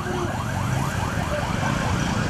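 An electronic vehicle siren warbling, its tone sweeping up and down about five times a second over a low rumble.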